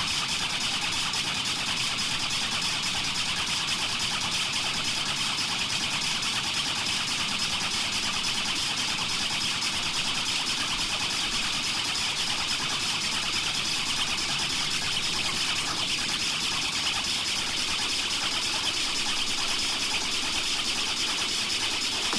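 Breakdown in an industrial techno DJ mix: the kick and bass drop out, leaving a steady, grainy, engine-like noise drone strongest in the upper mids. The bass comes back in at the very end.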